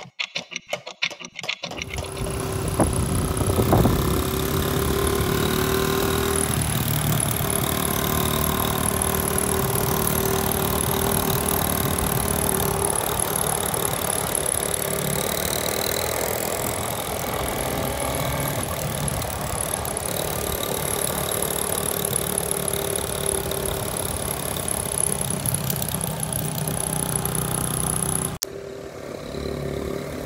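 A clock ticking for a second or two, then a motorcycle engine running steadily under way, with road noise, until it cuts off suddenly near the end.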